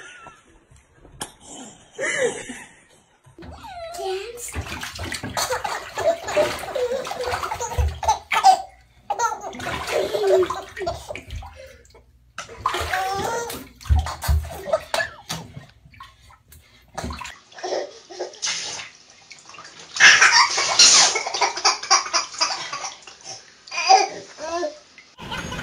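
Babies laughing and babbling, then water splashing in a bathtub near the end.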